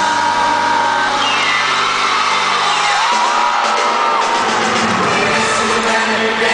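Live pop music played loud in an arena, with a held sung note, the audience screaming and whooping over it.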